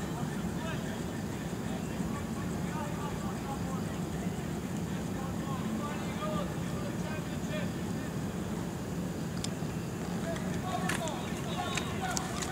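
Distant spectator chatter and players' calls across a soccer pitch over a steady outdoor hum, with a few short sharp clicks and livelier voices near the end.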